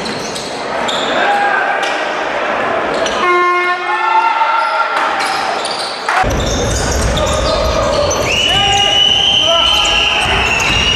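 Live game sound from an indoor basketball arena: a ball bouncing on the court amid crowd noise, with short pitched squeaks and calls. The background changes abruptly about six seconds in, and near the end a long, steady horn-like tone is held.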